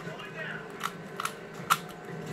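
Plastic 3x3 Rubik's cube layers being turned by hand, giving a few sharp clicks in the second half, the last one the loudest, over a steady low hum.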